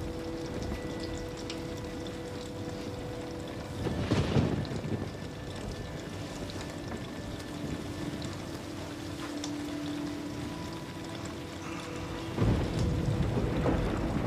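Steady rain with rumbles of thunder, one swelling about four seconds in and a longer one near the end, under a faint sustained musical drone.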